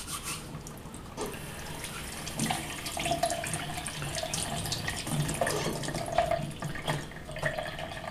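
Water running and splashing as a silver coin is rinsed of its bicarbonate-of-soda cleaning paste, with many small splashes and clicks.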